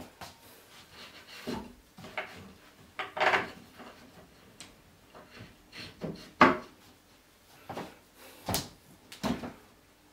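Irregular knocks and clatters of flat-pack particleboard shelving being handled and fitted together, about nine separate bumps, the loudest about six and a half seconds in.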